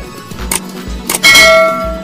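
Background music with a steady beat, a short click about half a second in, then a loud bell-like ding sound effect that rings out and fades over most of a second, the kind played with a subscribe-button and notification-bell animation.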